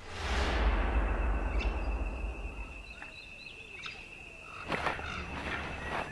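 Tropical rainforest ambience: scattered bird chirps over a steady, high, thin tone. It opens with a low rushing swell that fades over the first two seconds.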